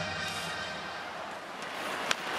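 Steady hockey-arena ambience during live play: an even crowd din with no distinct events.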